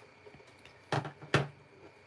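Two sharp clicks about a third of a second apart, about halfway through, from handling a stamp ink pad case and a clear acrylic stamp block while getting ready to ink the stamp.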